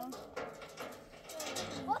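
People talking quietly, a few words at a time.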